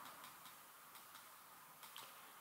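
Near silence with a few faint, scattered ticks from a stylus tapping on a tablet screen as a word is handwritten.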